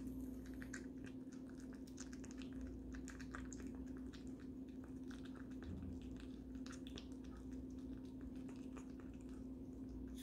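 Long-haired Chihuahua puppy eating dry kibble hurriedly from a stainless steel bowl: a quick, irregular run of faint small crunches and clicks. A steady low hum runs underneath.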